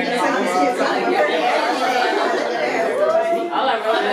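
Chatter: several people talking over one another in a room.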